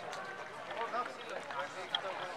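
Chatter of a gathered crowd, several voices overlapping at a distance with no one close to the microphone, and a brief sharp tick near the end.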